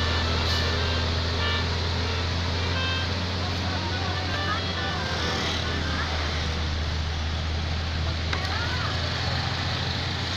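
Vehicle engines running in a slow traffic queue: a low, steady rumble, with people's voices now and then over it.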